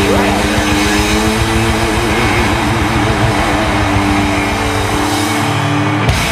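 Live hard rock band: loud distorted electric guitar holding wavering notes over drums and bass.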